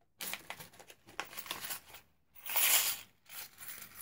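Small clear plastic bag crinkling as it is handled and opened, in irregular rustles, with one louder burst about two and a half seconds in.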